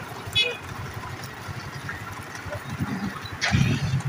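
An auto-rickshaw's small engine running close by. It comes in suddenly and loud about three and a half seconds in, over steady outdoor street noise, with a brief high-pitched call near the start.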